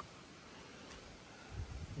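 Quiet lakeside ambience: a faint, even background hiss with no distinct event, and a low, uneven rumble coming in during the last half second.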